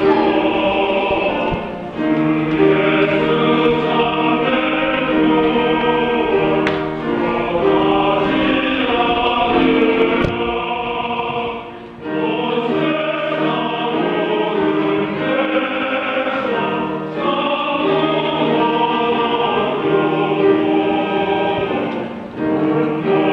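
A church men's fellowship choir singing a hymn together, with several voices holding sustained notes and short breaks between phrases, the clearest about twelve seconds in.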